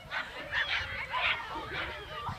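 Distant children shouting and squealing in short, high-pitched yelps.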